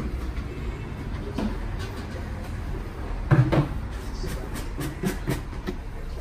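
Steady low hum with scattered light clicks and knocks of dishes being handled, and one louder knock about three and a half seconds in.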